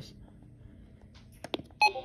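A button click on a Radio Shack 12-382 weather radio about a second and a half in, followed near the end by a short, loud electronic beep from the radio.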